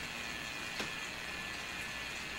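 Steady low background hiss of a voice-over recording with no distinct sound in it, apart from a single faint click a little under a second in.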